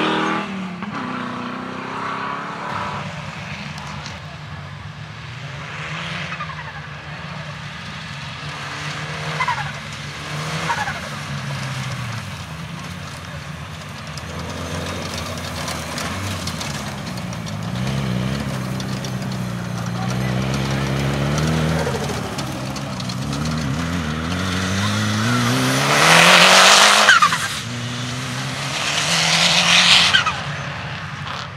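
Engines of Land Rover-based off-road competition trucks revving up and down as they are driven hard over rough grass, the pitch rising and falling repeatedly. Near the end one truck accelerates hard close by, the loudest moment.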